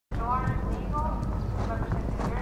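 A horse cantering on sand arena footing, its hoofbeats coming about twice a second, with a voice over the public-address system.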